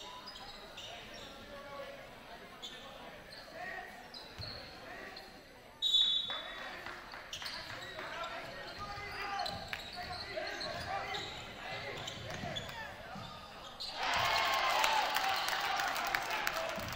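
Basketball game sounds in a gym: the ball bouncing on the hardwood court and sneakers squeaking, under spectators' chatter that echoes in the hall. It jumps louder about six seconds in and again about two seconds before the end.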